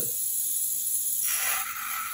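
Tedco toy gyroscope's rotor, just spun up with its pull string, whirring with a steady hiss. A little over a second in the sound grows louder and brighter as the spinning gyroscope's tip is set down on the pivot of its stand.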